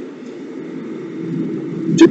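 Steady low background rumble of room noise, growing a little louder near the end.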